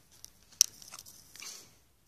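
Handling noise from a phone held right against a plush toy: light scattered clicks and rustles, with one sharp click about half a second in.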